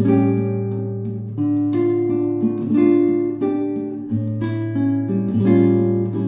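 Relaxed acoustic guitar instrumental: plucked and strummed chords changing every second or so over a low sustained bass note.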